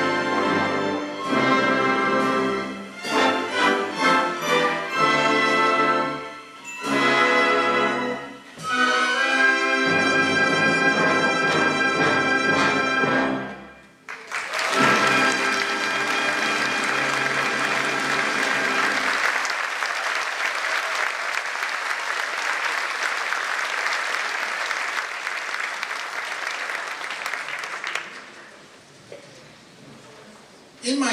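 Full orchestra of strings and brass playing the closing bars of a piece: a run of short, punchy chords, then a long held chord that cuts off about 13 seconds in. Audience applause breaks out at once, over a briefly ringing final chord, and runs for about 14 seconds before dying away near the end.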